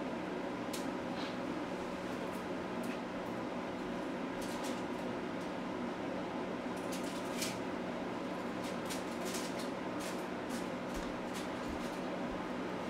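Steady room tone in a quiet house: a constant low hum under an even hiss, with a few faint scattered ticks, more of them after the middle.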